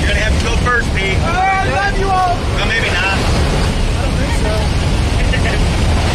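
Light aircraft's engine and the rush of wind through its open door, a loud, steady low noise, with people's voices calling out over it during the first three seconds and briefly near the end.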